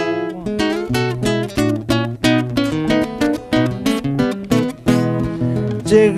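Acoustic guitar playing an instrumental passage: a quick run of plucked notes and strums, several a second.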